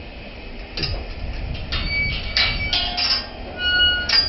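Steel pipe rails and gates of a cattle race clanking: about five irregular metallic knocks, each with a short ring.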